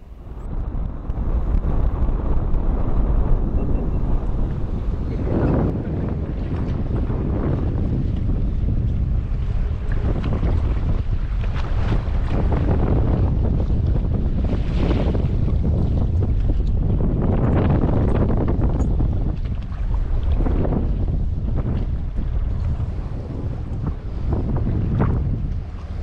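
Wind buffeting the microphone on a boat at sea, over the wash of the waves. The rumble swells and eases every few seconds.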